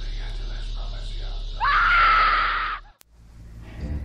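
A woman screams about halfway in, her voice sweeping quickly up in pitch and holding for about a second before cutting off suddenly. Before the scream there is only a low steady hum.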